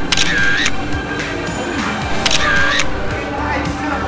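Two camera-shutter sound effects, one near the start and one about two seconds later, over background music.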